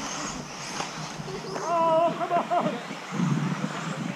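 Voices chatting beside a dirt RC track, with one drawn-out call about halfway through, over the faint running of 4WD RC buggies.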